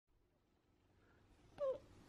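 Basset hound puppy giving one short, falling whimper near the end, after near silence.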